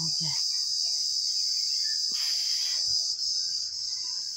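Steady, high-pitched insect drone, continuous and loud. A brief burst of hiss comes a little after two seconds in.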